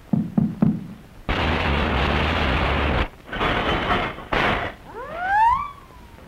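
Cartoon sound effects of an old jalopy collapsing: three quick thumps, then a loud crashing rattle lasting about two seconds, two shorter crashes, and rising squealing glides near the end.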